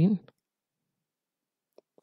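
A man's spoken word trailing off at the start, then silence broken only by two faint clicks near the end.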